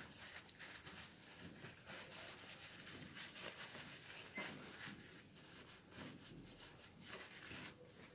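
Faint rustling and rubbing of a paper towel as a small ball bearing is wiped clean in the fingers.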